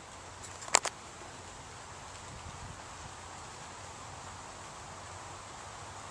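Steady soft outdoor hiss of trees and air, with two sharp clicks close together just under a second in.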